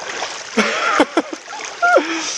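A hooked hourai masu (golden rainbow trout) thrashing and splashing at the surface of a shallow stream as it is drawn in on the line. The splashing is heaviest about half a second to a second in, over the steady run of the stream.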